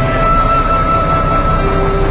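Diesel engine of a HOWO heavy truck running steadily just after starting, a dense low rumble, under background music with long held notes.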